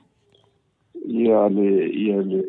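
A person's voice: after about a second of silence, a sustained voiced sound begins and carries on.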